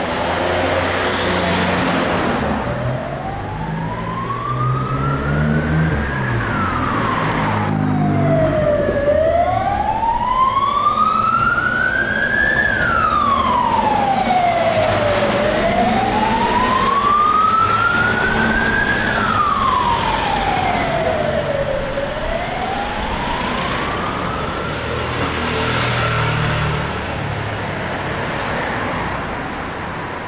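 An emergency vehicle siren wailing, its pitch slowly rising and falling about every six to seven seconds, fading out near the end, over the rumble of street traffic.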